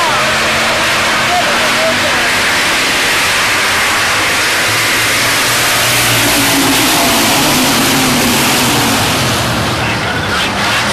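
A field of dirt-track hobby stock cars racing by together, a loud, unbroken wash of engine and exhaust noise. About six seconds in one car passes close, its engine note rising and then falling away.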